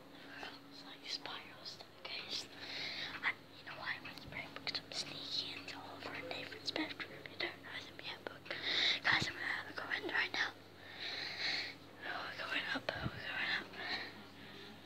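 A child whispering close to the phone's microphone in short breathy bursts, with a few knocks from the phone being handled.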